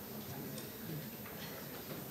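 Faint room noise of a seated audience in an auditorium, with a few light ticks.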